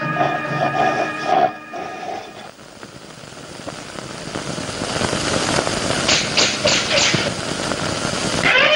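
Old film soundtrack: background music with percussion that stops about a second and a half in, followed by a rushing noise that swells steadily louder. A few short sharp rasps come near the end.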